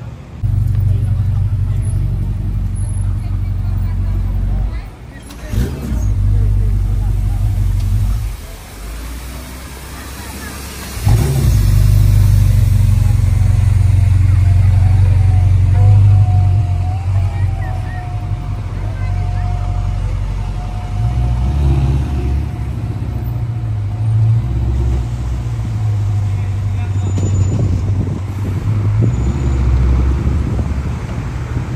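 Ferrari V8 supercar engines running in slow town traffic: a deep steady rumble, first from an SF90 Stradale, then, after a dip about a third of the way in, from a 488 Pista's twin-turbo V8 idling and moving off, its revs rising and falling.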